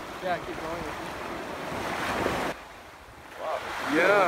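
Small waves breaking and washing up a sandy beach. The surf sound drops off suddenly about two and a half seconds in, then builds again before a voice starts near the end.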